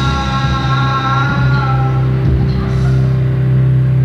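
Live rock band playing loud, with electric guitars and bass holding one sustained chord whose upper notes fade about halfway through.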